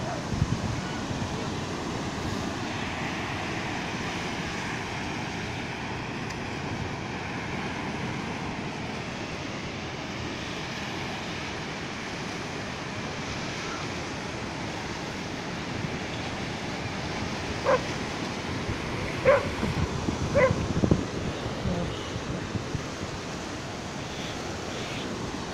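Heavy swell surf washing in over the sand in a steady rush, with wind. A few short barks stand out about three quarters of the way through.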